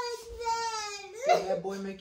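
A young woman wailing in one long, drawn-out cry that slowly falls in pitch, breaking about a second in into a lower sobbing cry.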